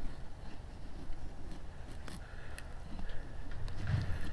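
A Bowie knife's edge shaving and scraping down a stick of frozen wood, faint, with a few small ticks as the blade bites.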